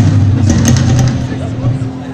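Live blues band playing, carried mainly by a low electric bass line with light cymbal ticks over it, the music growing quieter toward the end.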